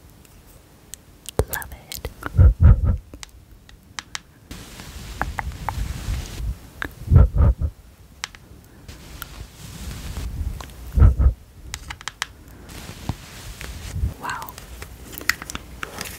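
Close-miked makeup brush swirling and scratching over pressed eyeshadow pans in a palette, a soft bristly swish with small scratchy ticks. Three deep thumps stand out among it.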